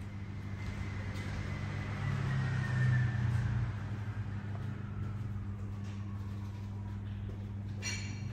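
A steady low mechanical hum, swelling about two to three and a half seconds in, with a faint higher tone gliding slowly downward.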